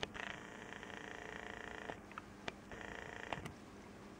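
A camera's zoom lens motor whirring in two runs, about two seconds and then about half a second, as the lens zooms in. A few faint clicks come between and after the runs.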